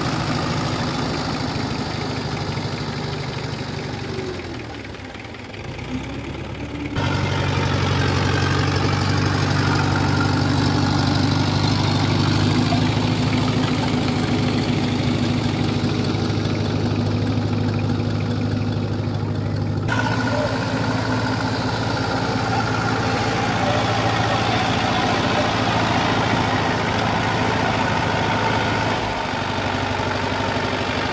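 The diesel engines of a homemade tandem tractor, two four-cylinder tractors joined into one, running steadily. The engine sound drops briefly about five seconds in and shifts abruptly in pitch twice, at about seven and twenty seconds in.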